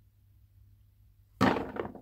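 Near silence, then a single sudden thunk about one and a half seconds in: a small flicked object landing on a box.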